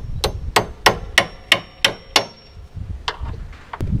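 Hammer driving a nail to tack the table saw's mounting in place: about eight quick strikes, roughly three a second, each with a metallic ring. Two more strikes follow after a short pause.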